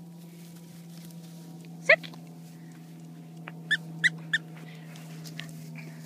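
Schnauzer giving one short, high bark about two seconds in, then three quick ones in a row about two seconds later.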